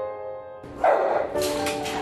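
Soft piano music, over which a dog barks loudly about a second in, in an echoing kennel room, followed by sharper barks and clatter.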